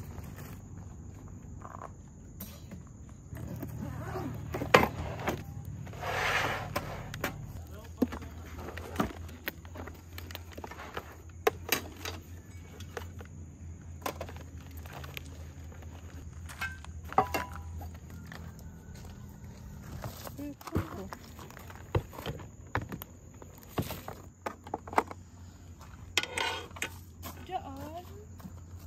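Scattered sharp clicks and knocks of camping gear being handled: a compact portable gas stove and its hard plastic case are taken out and set down on a wooden bench.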